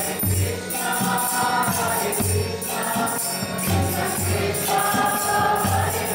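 Kirtan: a group singing a devotional chant together, with jingling hand cymbals and a low drum beating in a repeating pattern.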